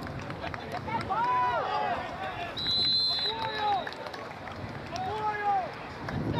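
Spectators shouting across a football field, high-pitched calls in several bursts, with one short steady whistle blast just before the middle, typical of a referee's whistle ending the play.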